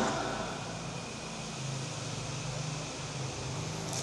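Steady low hum over a faint even hiss: the room tone of a large hall between spoken phrases, with the last word's echo dying away in the first half second.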